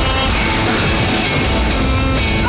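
Loud rock music with electric guitar and drums.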